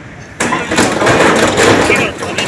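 Escorts backhoe loader's diesel engine working under load as its bucket pushes into a shop's metal shutter and awning, with a sudden loud burst of scraping and crumpling sheet metal about half a second in.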